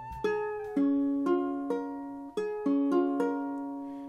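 Ukulele with a capo on the first fret, its strings plucked one at a time, each note left to ring out, to check the tuning and listen for buzzing.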